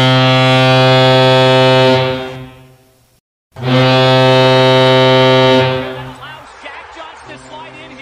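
Electric hockey arena goal horn, the Colorado Avalanche's, played as a clean audio sample. It sounds one long, steady, low blast of about two and a half seconds that fades out, cuts to dead silence, then sounds a second matching blast of about two seconds that fades away.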